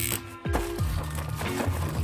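Background music with sustained low notes and a bass line. A brief high crackle sounds right at the start.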